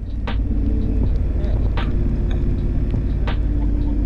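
Triumph Street Scrambler's 900 cc parallel-twin engine running at a steady cruise, heard from the rider's seat over a low wind rumble on the microphone. Three short ticks come about a second and a half apart.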